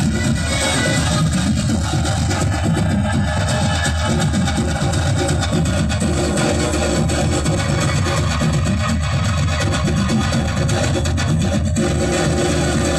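Dance music with an electronic beat, played loud and without a break through a loudspeaker.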